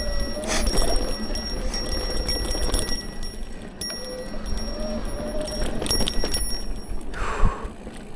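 Mountain bike riding over rough dirt singletrack: a steady low rumble of tyres and wind on the microphone, with frequent irregular clicks and rattles from the bike.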